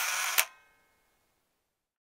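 Camera shutter sound: a short rasping burst that ends in a sharp click just under half a second in, then fades away.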